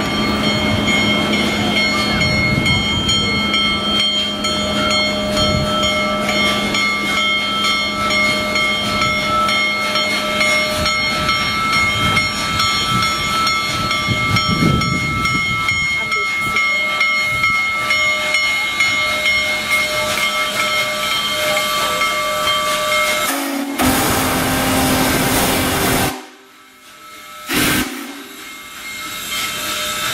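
Union Pacific Big Boy 4014, a 4-8-8-4 articulated steam locomotive, arriving with its steam whistle sounding a long, steady chord over a hiss of steam. Near the end the chord stops and a rougher rush of steam and train noise follows, broken twice by sudden drops in level.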